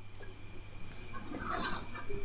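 Faint background room noise with a steady low hum.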